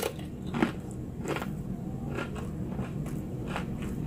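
Close-miked chewing of a tortilla chip topped with spinach artichoke dip: scattered crisp crunches, roughly one every half second to second, with quieter mouth sounds between.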